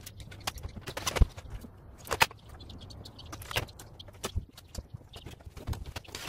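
Irregular clicks, knocks and rattles of an electric oven being dismantled by hand: wiring and small metal parts being pulled and handled against the sheet-metal casing. The sharpest knocks come just over a second in and at about two seconds.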